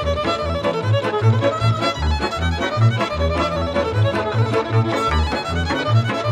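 Instrumental passage of Romanian Banat folk dance music: a violin plays a fast, ornamented melody over a bass line stepping in a steady beat.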